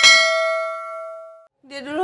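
Notification-bell chime sound effect: a single struck bell-like ding that rings and fades away over about a second and a half.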